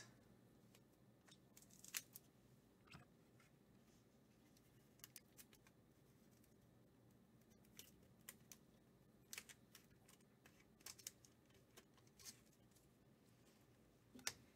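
Near silence broken by scattered faint clicks and rustles of trading cards and clear plastic card sleeves being handled.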